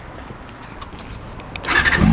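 Honda Hornet motorcycle's inline-four engine starting up, suddenly getting loud about one and a half seconds in and catching into a run; before that only faint low background noise with a few light clicks.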